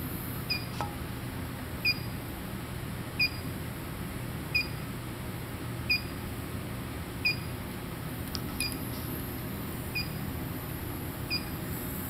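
A short electronic beep repeating evenly about every 1.3 seconds over a steady low hum from the running induction heating apparatus as its power is turned up.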